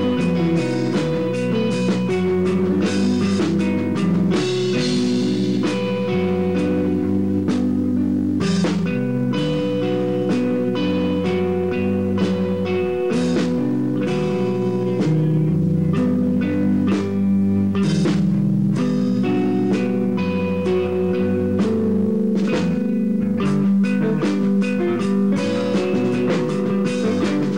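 Rock band playing live: electric guitar and electric bass over a drum kit, loud and steady throughout.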